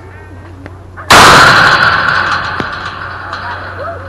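A softball fouled straight back into the chain-link backstop beside the microphone about a second in: one very loud hit, then a rattle of the fence that dies away over about two seconds.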